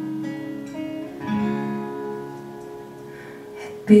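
Acoustic guitar played softly between sung lines, its notes ringing on and fading, picking up again about a second in. The voice comes back in singing right at the end.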